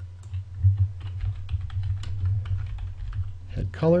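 Typing on a computer keyboard: a quick run of keystrokes lasting about three seconds, over a steady low hum.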